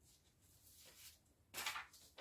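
Sheets of paper rustling as they are handled, soft at first, with a louder rustle near the end.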